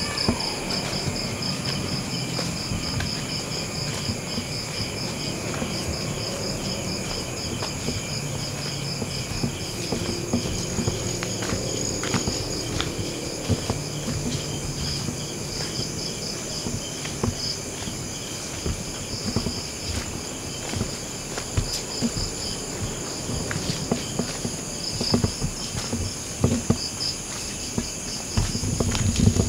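Night chorus of crickets and other insects, a high steady trill with one fast, evenly pulsing chirp, with scattered footsteps and rustles on a dirt path.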